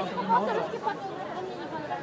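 Several people talking at once: the overlapping chatter of a group walking together, no single voice standing out.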